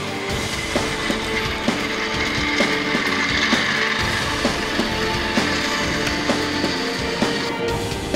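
Background music with sustained held notes over a steady beat.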